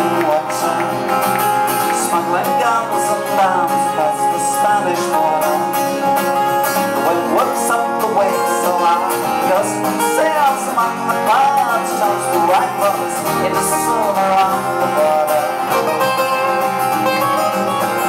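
Two acoustic guitars playing an instrumental break live: chords strummed under a picked lead melody with sliding notes.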